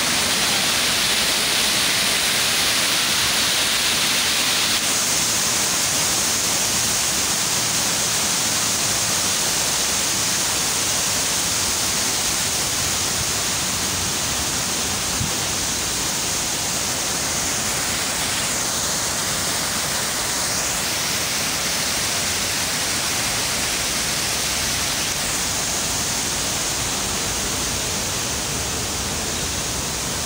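Man-made waterfall spilling over artificial rockwork into a pond: a steady rush of falling water.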